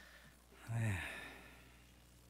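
A man's low, voiced sigh into a podium microphone, starting about two-thirds of a second in, falling in pitch and fading away.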